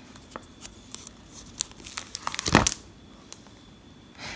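Pages of a photo book being turned by hand, the paper rustling and crackling, with a quick run of crisp page flicks about two and a half seconds in.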